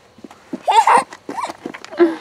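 A young child's loud, high-pitched squeal of excitement about halfway through, followed by a shorter laughing cry.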